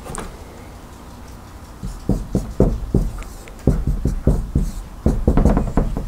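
Dry-erase marker writing on a whiteboard: a quick run of about a dozen short strokes and taps, starting about two seconds in.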